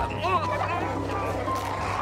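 Horror-film soundtrack: a sustained low music drone with a rushing noise, and a few brief wavering, cry-like sounds in the first half second.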